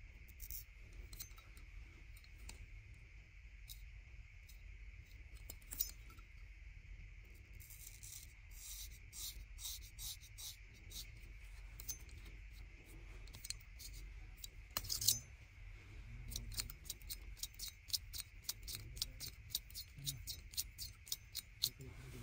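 Straight razor slicing through hair in quick, short, crisp strokes, coming in runs that are densest in the second half, with one louder scrape about two-thirds of the way through.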